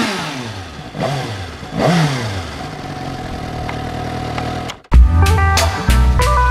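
2019 Suzuki GSX-S750's inline-four engine through a Yoshimura R-11 Sq slip-on exhaust, falling from a rev and then blipped twice, about one and two seconds in, each time dropping back before settling to a steady idle. Loud music starts suddenly near the end.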